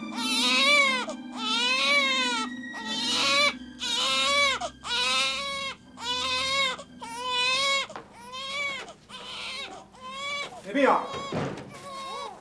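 Infant crying hard in a run of wails, about one a second, each rising and falling in pitch, growing weaker toward the end. About a second before the end, a short, different sharp sound cuts in.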